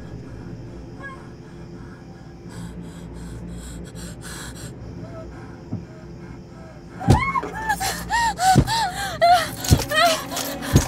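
A woman's frightened breathing over a low steady horror-score drone. About seven seconds in, three heavy thumps come in, along with a quick run of high, short whimpering cries.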